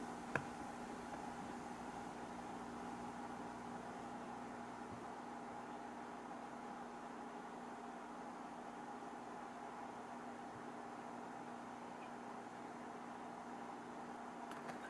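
Faint steady hum with hiss, holding a couple of constant tones, with one small click about half a second in.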